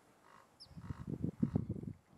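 Bull northern elephant seal giving its low, rapidly pulsed call. The call starts about half a second in and peaks just past the middle.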